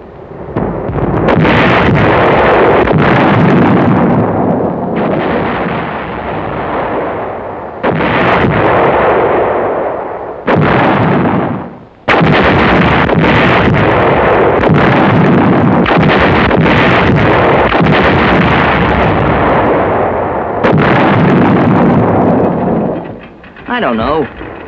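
Artillery firing in a continuous barrage: several sharp, sudden reports over a dense, unbroken din, with brief lulls between.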